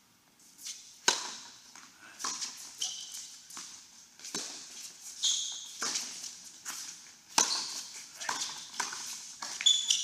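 Doubles tennis rally on a hard indoor court: racket strikes and ball bounces come as sharp pops every second or so, mixed with brief high squeaks of shoes on the court surface. It starts after a moment of near silence.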